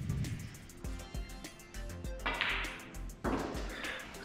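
A snooker shot: the cue tip strikes the cue ball, then balls click together on the table, over faint background music. Two short swishing noises near the end are the loudest sounds.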